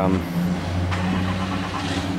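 A steady low mechanical hum, like a motor running, under a brief spoken 'um' at the start.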